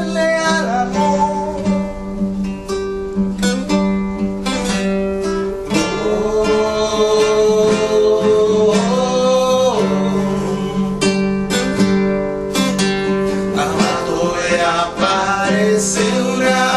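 Two acoustic guitars, a steel-string and a nylon-string classical, strummed and plucked together in a nueva trova song's instrumental passage, with sustained chords and frequent strums.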